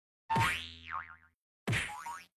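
Cartoon 'boing' sound effect, a springy wobbling twang, heard twice: once just after the start and again near the end.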